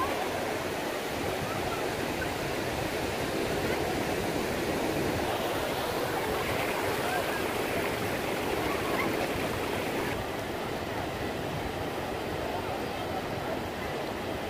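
Ocean surf washing into the shallows in a steady rush of water, with faint voices of bathers in the water.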